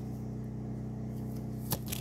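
A steady low hum, with one faint click near the end.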